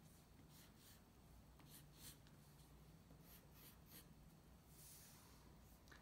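Faint scratching of a graphite pencil on paper in short strokes as small wave lines are drawn.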